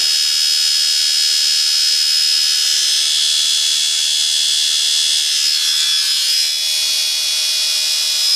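Small brushed DC motor running steadily at speed, a high-pitched whine made of several steady tones.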